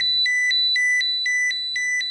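TERRA-P radiation dosimeter sounding its alarm: a rapid high-pitched beeping, about four beeps a second. The alarm is set off by the high dose rate from radioactive firefighter's clothing fabric held against it.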